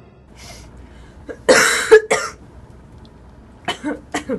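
A person coughing: one loud cough about one and a half seconds in, a shorter one right after, and another short cough near the end.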